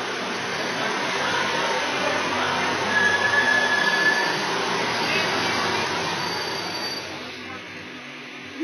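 Metro train pulling into an underground station platform: a loud steady rumble of the train running in, with a brief high squeal about three seconds in, dying away near the end.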